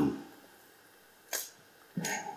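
A man's reading voice trails off, then a pause in a quiet, echoing room broken by one short, sharp click-like noise about a second and a half in.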